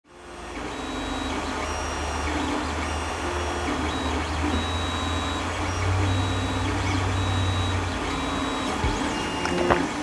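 FDM 3D printer running a print, its stepper motors giving short whining tones that shift pitch with each move. Under them is a steady low hum that stops near the end.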